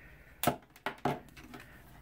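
Multimeter test-lead plugs being pulled out of the meter's jacks: one sharp click about half a second in, then a few lighter clicks.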